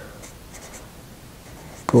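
Faint scratching of a marker pen writing numbers on paper.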